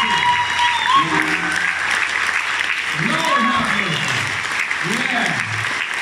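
Audience applauding steadily at the close of a concert.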